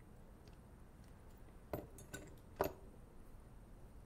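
Three small, sharp metallic clicks, the last the loudest, as watchmaker's steel tools (screwdriver and tweezers) touch the ETA 2472 watch movement in its case.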